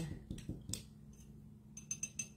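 Paintbrush knocking against a glass jar of rinse water: a few faint clicks about half a second in, then a quick run of small glass clinks near the end.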